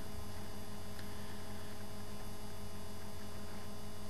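Steady electrical mains hum over a low background hiss, unchanging throughout.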